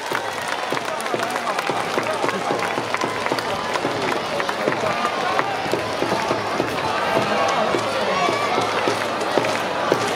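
Baseball stadium crowd talking and cheering, with scattered clapping, after a run-scoring hit.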